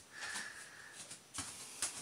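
Faint handling of a small white plastic potty bowl: a soft hiss, then two light knocks a little after halfway and near the end.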